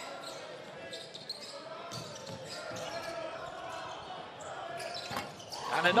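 Indoor basketball game sound: a ball bouncing on the hardwood court over steady crowd noise in an arena hall. Near the end the crowd swells as a three-pointer goes in.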